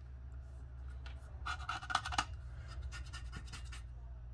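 Handling noise from a telegraph straight key on a wooden base being turned over in the hands: light scratching and small clicks, busiest about one and a half seconds in and again near the end, over a low steady hum.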